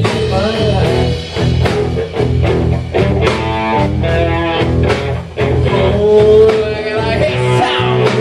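Live rock band playing loudly, with electric guitars, bass guitar and a regular drum beat.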